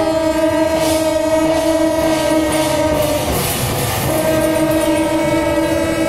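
Several long straight brass procession horns blown together in two long held blasts on one note, with a pause of about a second between them. Drums and percussion play underneath.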